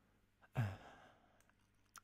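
A man's short sigh about half a second in: a sudden breathy exhale with a little voice in it, fading out over about half a second. Otherwise quiet room tone with a low hum.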